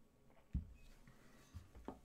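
A cup set down on a desk with a dull knock about half a second in, followed by two softer knocks near the end.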